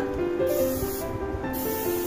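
Aerosol hairspray sprayed onto set curls in two short hissing bursts, the second longer, over background music.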